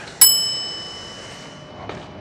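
A bell struck once: a bright, high ding that rings and fades away over about a second and a half.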